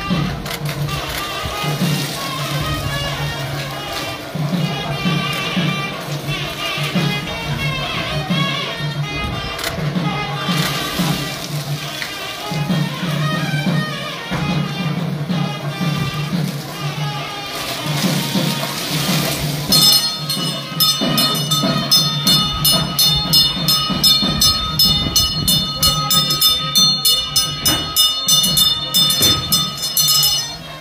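Music with a steady, pulsing low drone and a wavering melodic line. About two-thirds of the way in, a rapid, continuous ringing of bells joins it, many strokes a second.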